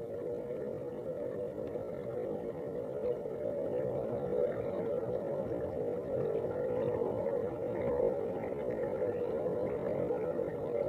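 Steady, muffled underwater rumble of bathwater picked up by a submerged microphone, growing a little louder after about three seconds.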